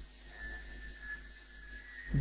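Quiet room tone: a steady low mains hum with a faint, thin, steady high whine.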